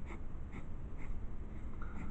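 A pen drawing on paper: three short scratchy strokes, about half a second apart, over a low steady room hum.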